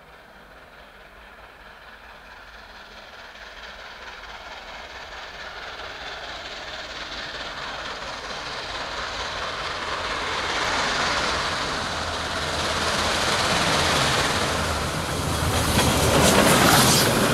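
Beyer-Garratt AD60 articulated steam locomotive 6029 approaching along the track, its sound growing steadily louder until it is close by near the end.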